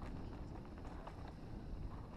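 Mountain bike riding down a dirt trail: steady low wind rumble on the microphone, with irregular clicks and rattles from the tyres on the ground and the bike.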